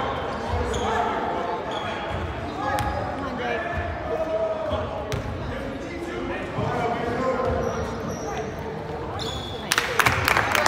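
Basketball game in an echoing gym: indistinct voices of players and onlookers, with a basketball bouncing on the wooden court now and then. Near the end comes a quick flurry of sharp knocks and squeaks as live play gets going.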